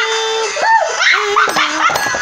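High-pitched, dog-like whimpering vocal sounds: one held whine, then several short wavering cries.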